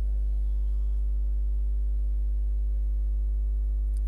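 Steady low electrical mains hum with a stack of even overtones, unchanging throughout.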